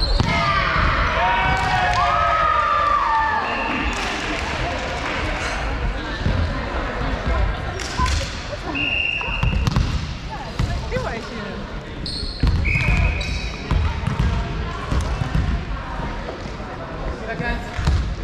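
Indistinct chatter of players and onlookers echoing in a large gym hall, with a ball thumping on the wooden floor and a few short, high sneaker squeaks on the hardwood.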